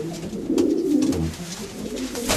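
Racing pigeons cooing in their loft, the strongest coo about half a second in.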